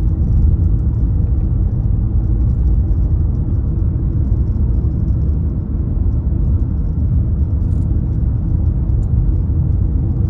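Steady low rumble of road and tyre noise inside the cabin of a car cruising along a highway.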